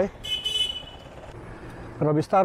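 A vehicle horn toots once, about a quarter second in, holding one steady pitch for under a second, over faint road and wind noise.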